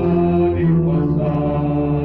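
Mixed church choir of men's and women's voices singing slow, long-held chords in parts, the notes changing every second or so.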